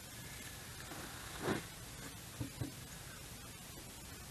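A rag wiping old grease off a pop-up camper's lift screw drive, over a low steady hiss: one brief rub about a second and a half in, then two light knocks close together.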